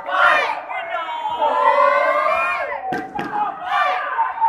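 Crowd of spectators shouting and cheering, with many voices overlapping, and two sharp smacks a little after three seconds in.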